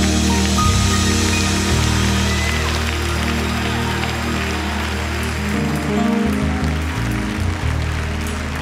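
Organ sustaining long low chords that shift about six seconds in, over a haze of crowd noise that thins out toward the end.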